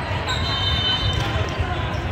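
Echoing din of a large sports hall during volleyball play: many voices at once, with balls being struck and bouncing on the courts. A high, steady whistle-like tone sounds for about a second near the start.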